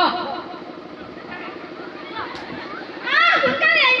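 Performers' voices through a microphone and loudspeaker: a drawn-out, high-pitched "aa" right at the start, a quieter stretch with only a steady low hum, then loud, high-pitched voices again from about three seconds in.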